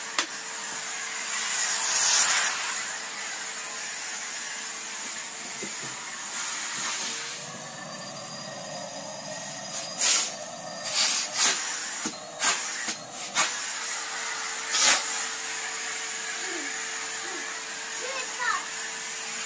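Numatic Henry vacuum cleaner running steadily: a hissing rush of suction over a steady motor whine, whose pitch shifts for a few seconds around the middle. A series of sharp knocks comes in the second half, louder than the vacuum.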